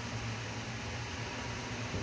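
Steady low hum with an even hiss of background noise, unchanging throughout, with no distinct sound events.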